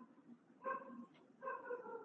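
A dog whimpering faintly: three short high whines, the last one drawn out and sliding slightly lower in pitch.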